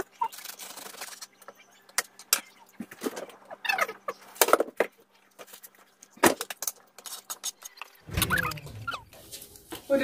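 Chef's knife chopping onion and sausage on a cutting board: a series of irregular sharp taps as the blade hits the board, with quiet talking in between.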